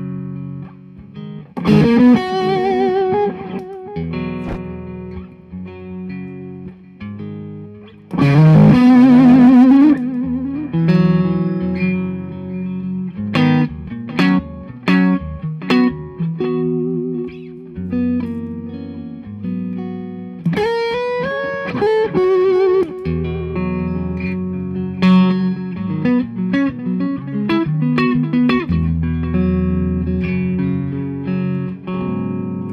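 Electric guitar played through a Brute Drive distortion pedal, improvising a blues lead. Loud sustained notes with wide vibrato come about 2, 9 and 21 seconds in, with quick runs of picked and slurred notes between them.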